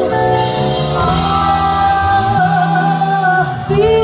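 Live band performance: a female vocalist sings long held notes with vibrato over electric guitar, keyboards and drums.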